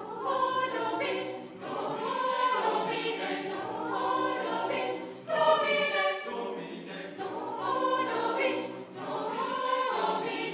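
A school choir of mixed boys' and girls' voices singing a sustained piece in phrases, with short breaks between phrases.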